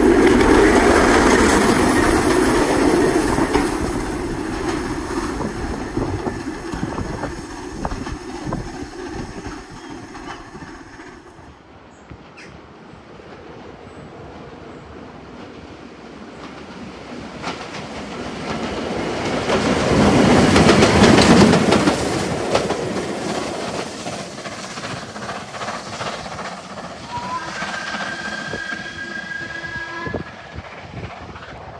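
Steam locomotive and its train of coaches passing, with wheels clattering over the rail joints. It is loud at first and fades over about ten seconds, then swells again to a peak around twenty seconds in, and a faint steady whistle-like tone sounds near the end.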